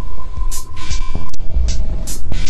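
Experimental electronic noise music: a steady high tone that cuts off with a sharp click a little past halfway, over deep bass pulses and short bursts of hiss.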